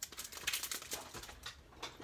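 Clear plastic packaging of a set of cutting dies crinkling and crackling as it is handled and opened, a quick irregular run of small crackles.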